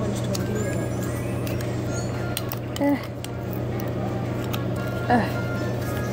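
Faint background voices and music over a steady low hum, with a few light clicks about two and a half seconds in.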